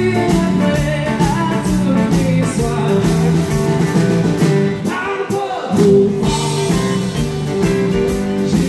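Live country band playing the opening of a song: drums keeping a steady beat under acoustic guitar, bass and fiddle, with the low end dropping out briefly about five seconds in.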